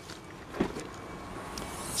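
Tailgate of a Mitsubishi ASX being unlatched and lifted open, with one faint short click about half a second in, over a steady low background hiss.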